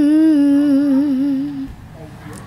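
A young girl humming one long held note of an unaccompanied song, with a wavering vibrato, sinking slightly in pitch and stopping near the end.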